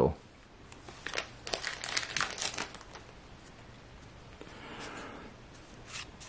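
A hockey card pack's plastic wrapper crinkling as it is handled and torn open. A run of crackles comes in the first half, then softer rustling of cards near the end.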